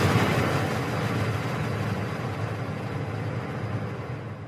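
Intro logo sound effect: a long, noisy whoosh that slowly fades away.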